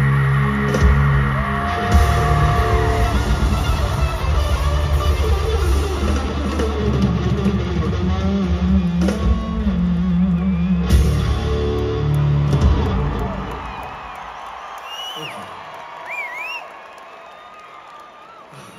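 Live rock band of electric guitars, bass and drums playing loudly, with sustained chords and hard drum hits. The band stops about 13 seconds in, and the music falls away to an arena crowd cheering with scattered whistles.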